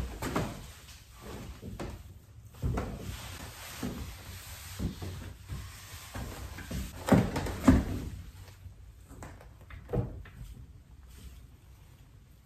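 A cast-iron lathe apron being handled and fitted against the saddle: irregular clunks and knocks of metal parts, the loudest two about half a second apart around seven seconds in, with another knock a little later.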